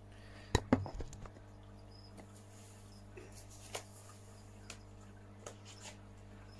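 Hands handling a clear plastic tub: two sharp plastic clicks about half a second in, then a few light, scattered ticks and taps.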